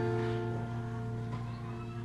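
Background music: an acoustic guitar chord rings out and slowly fades.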